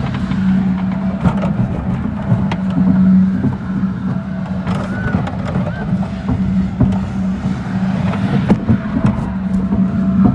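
Spider amusement ride running, heard on board: a steady low drone from its drive machinery with scattered clanks and rattles from the arms and cars. A brief faint squeal about halfway through.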